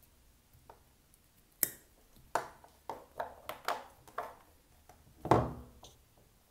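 Pliers and a cut USB cable being handled: a series of short, sharp clicks and taps, then a louder knock about five seconds in.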